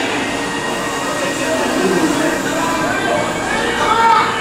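Steady noise of a dark ride in motion, the vehicle's running sound mixed with the scene's background soundtrack, with faint indistinct voice-like sounds.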